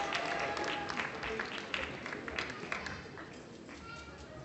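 Audience applause, a crowd clapping for a graduate, dying down toward the end.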